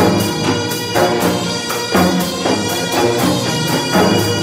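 Korean traditional (gugak) orchestra playing a contemporary piece: sustained melody instruments over a steady beat of percussion strikes, the loudest about once a second.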